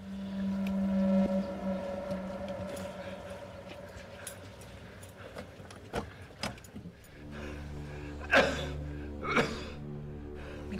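A large truck's engine running steadily, with a few sharp metallic clicks and knocks about six seconds in. A steady low drone and two short, high sweeping squeals follow near the end.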